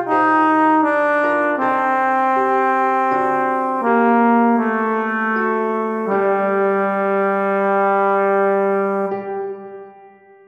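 Choral rehearsal track played on synthesized brass-like instrument sounds: several parts in slow, steady chords, the tenor line among them, moving to a long held final chord that cuts off about nine seconds in at the end of the section.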